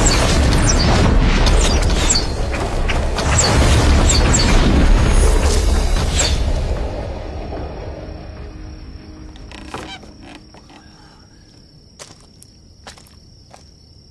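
Dramatic film score with deep booming hits and whooshing effects, loud for about the first seven seconds and then fading away. After it, a steady high chirring of crickets with a few soft clicks.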